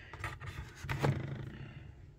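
Faint light clicks and scrapes of chrome deep-well sockets being handled in a plastic socket tray, a few near the start and one near the middle, over a low hum.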